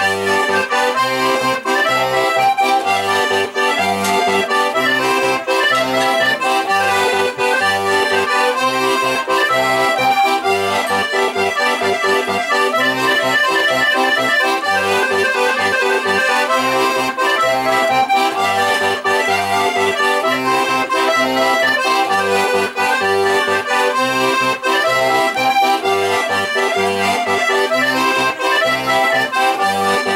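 Paolo Soprani organetto (diatonic button accordion) playing a traditional Italian folk tune solo: a melody over regular, evenly repeating bass notes.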